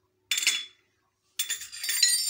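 A metal spoon clinking against a ceramic mixing bowl as a spoonful of mustard is knocked off it into the bowl. There are two bouts: a short clink about a third of a second in, then a longer ringing clatter from about a second and a half in.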